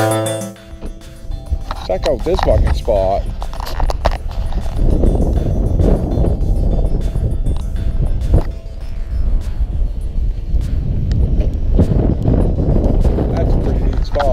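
Wind buffeting the microphone as a steady low rumble and rush. Two short wavering calls come about two to three seconds in. Background music cuts off just at the start.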